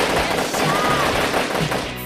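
A long, continuous burst of rapid machine-gun fire from a Thompson tommy gun, played back as a recorded movie sound clip.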